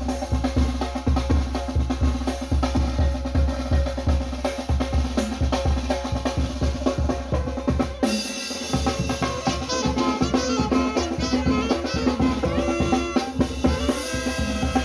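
Tamborazo band playing live: saxophones carry the tune over a steady beat from the tambora bass drum, snare, cymbal and congas. About eight seconds in the bass drum drops out for about a second, then the band carries on.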